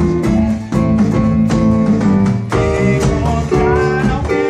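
Small live band playing an upbeat disco tune: strummed acoustic guitar over an electric bass line, with a steady beat.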